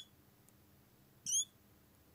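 Whiteboard marker squeaking on the board as a line is drawn: a short high squeak right at the start and another about a second and a quarter in.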